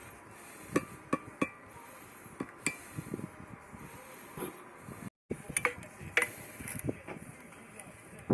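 Steel trowel working on concrete blocks and wet mortar, scraping and trimming a joint, with a scatter of sharp metallic clinks and knocks against the block and the metal profile and level. The sound cuts out for a moment about five seconds in.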